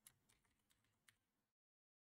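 Very faint computer keyboard typing, a handful of soft keystrokes over about the first second and a half.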